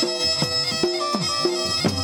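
Instrumental passage of a Gujarati dakla: a daklu drum struck in a steady rhythm, about two to three strokes a second, each stroke bending in pitch. A sustained reedy drone of held tones runs underneath.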